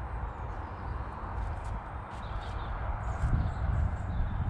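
Outdoor ambience: a low, fluctuating rumble like wind buffeting the microphone, with a few soft footstep thuds about three seconds in as the filmer moves around the bed.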